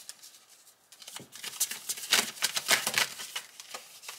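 A tarot deck being shuffled by hand: a quick, irregular run of card flicks and taps that starts about a second in.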